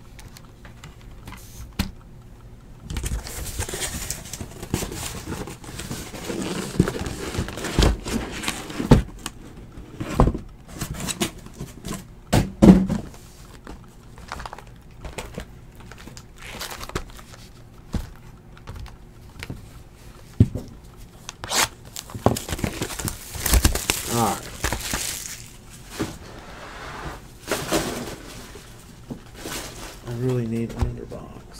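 Desk-top handling noise: scattered knocks and thuds as things are moved about and set down on the mat, with stretches of crinkling plastic wrap from a shrink-wrapped card box.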